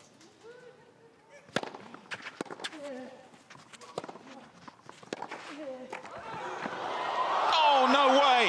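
Tennis rally on a clay court: a quick run of sharp pops from racket strings hitting the ball, with a few faint voices in the stands. From about six seconds in, the crowd breaks into cheering and shouting that swells to loud by the end, as the match point is won.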